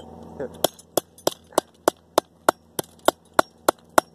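Hammer striking a copper pipe in a steady run of about a dozen sharp blows, roughly three a second, beginning just under a second in. The blows are bending the pipe back on itself so it packs compactly as scrap.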